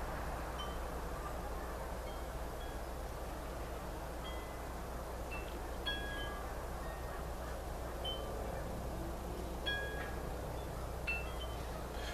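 Wind chimes ringing now and then, single high notes at several different pitches struck at irregular moments, over a steady background hiss and low hum.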